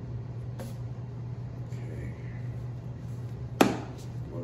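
A deck of tarot cards handled in the hands, with a faint click about half a second in and one sharp card snap a little before the end, over a steady low hum.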